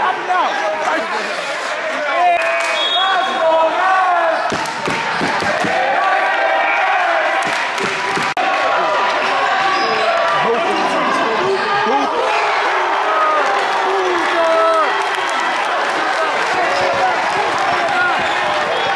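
Gym crowd of spectators talking and shouting over one another, with a basketball bouncing on the wooden court and occasional sharp thuds.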